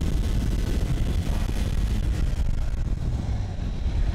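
KTM RC 390's single-cylinder engine running as the motorcycle rides up close, a steady low rumble of quick firing pulses that eases slightly near the end.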